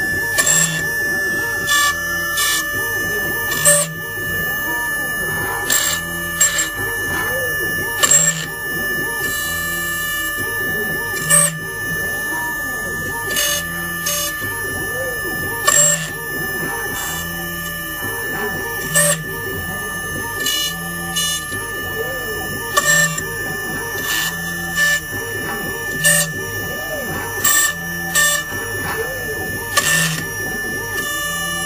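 CW F01S CNC PCB router depaneling machine running: a steady high whine under repeated rising-and-falling motor sweeps as the router head moves from cut to cut, with short sharp clicks every second or two.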